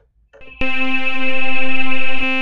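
MSoundFactory software synthesizer sounding one held note on its wavetable oscillator with unison voices enabled: a bright, buzzy tone rich in overtones that starts with a click about half a second in and swells slightly as it holds.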